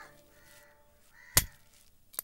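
One sharp axe strike into a log about a second and a half in, wood being chopped for firewood, with a bird calling faintly before it.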